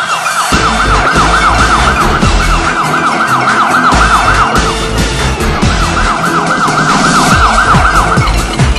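Yelp-style siren wailing rapidly up and down several times a second, breaking off for about a second in the middle, over electronic music with a heavy beat.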